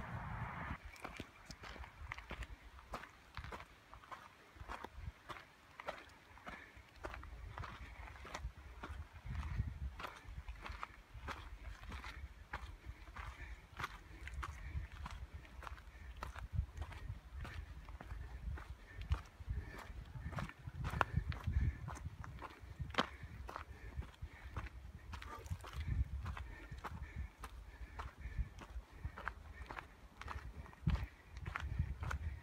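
A hiker's footsteps on a dirt trail strewn with dry leaves, a steady walking pace of about two steps a second, over a low rumble.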